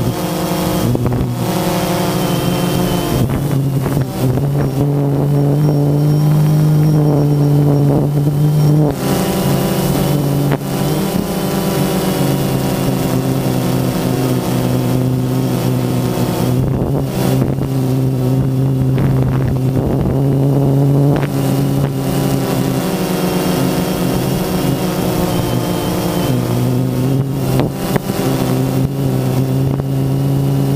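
Quadcopter drone's electric motors and propellers whining steadily, picked up close by the drone's own camera, the pitch stepping up and down a little as the motors change speed.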